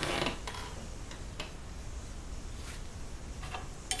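A few faint, irregular clicks and taps over a low room hum: a paintbrush tapping and scraping against the canvas and the oil-paint palette.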